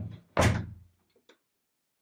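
Two heavy thumps about three-quarters of a second apart, like a door being shut, followed about a second in by two faint clicks.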